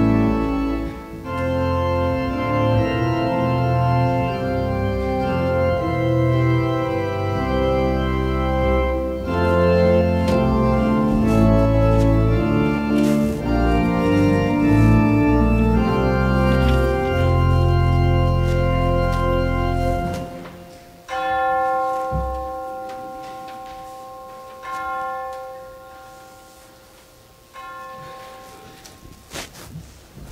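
Organ playing slow sustained chords over a deep pedal bass line; about two-thirds of the way through the bass drops out and the final held chords are faded away with the foot-pedal volume control, so the sound seems to be going away.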